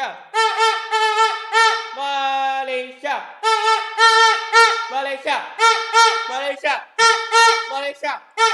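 A plastic supporter's horn blown in a rhythmic run of short toots, with a long held note about two seconds in. It jumps between a low note and the note an octave above.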